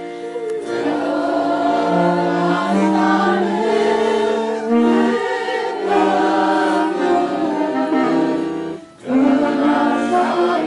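Several voices singing a slow funeral hymn in harmony, with long held notes; the singing breaks off briefly near the end, then resumes.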